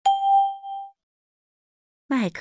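A single chime: one clear, sharply struck ding with faint higher overtones, dying away within about a second. It is the cue tone of a recorded language-listening exercise, sounding between the spoken parts of a test item.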